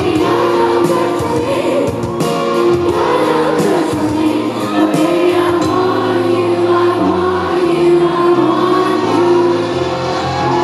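Live band playing with a woman singing lead: drums, piano, keyboards and electric guitar, her voice in long held notes over the chords. Drum hits are clearest in the first half.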